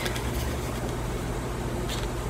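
Steady low background hum and room noise, with no other event.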